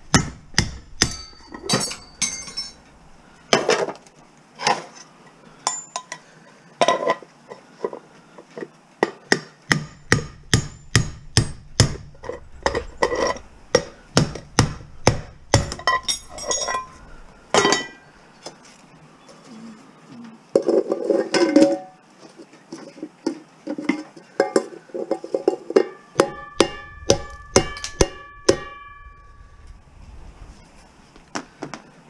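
Steel hammer striking a non-stick cooking pan on a work block, sharp metallic blows at about one and a half a second with short clinks between. A rougher, longer scraping burst comes about two-thirds of the way in, and near the end a struck metal pot rings with a clear tone.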